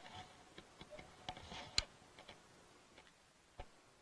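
Faint, irregular clicks and light taps, one sharper a little under two seconds in.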